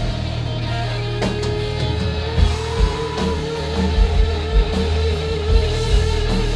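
Live rock band playing loud: a guitar holds one long note from about a second in, over drums and bass.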